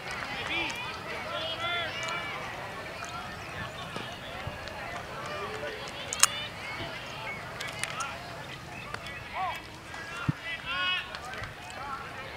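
High-pitched children's voices shouting and cheering in short calls from the dugouts and stands, too far off to make out words, with a sharp knock about six seconds in.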